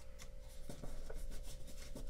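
Origami paper being folded and creased by hand: faint rustling with a few soft crinkles.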